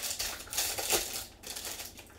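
Foil wrapper of a trading card pack crinkling and crackling as gloved hands open it, busiest in the first second or so and dying away near the end.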